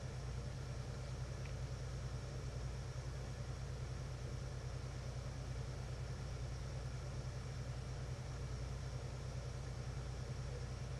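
Steady low hum with an even background hiss and no distinct events: room tone.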